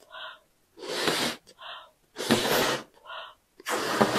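A person blowing up a latex balloon by mouth: three long, breathy blows about a second and a half apart, with a short intake of breath between each.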